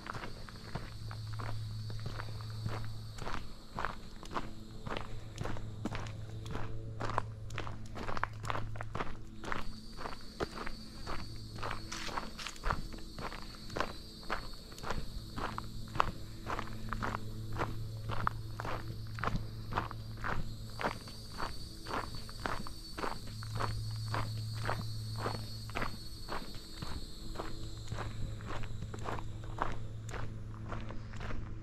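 Footsteps of a hiker walking steadily along a packed dirt and gravel forest trail, about two steps a second. A steady high-pitched buzz runs behind them from about ten seconds in until near the end.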